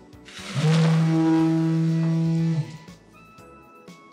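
Handheld electric power tool, its shaft in the fresh concrete of a box filling-test container, running at a steady speed for about two seconds with a loud, even motor hum and hiss, then switched off abruptly.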